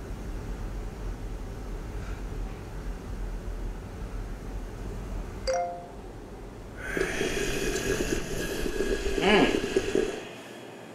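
A phone's text-message notification chime, two short tones about five and a half seconds in, over a low steady rumble from the film's soundtrack. About a second later comes a louder, harsh horror jump-scare sound effect that swoops in pitch near the end and cuts off suddenly.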